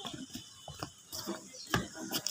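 Footsteps on a wooden plank deck: light, irregular knocks several times across the two seconds.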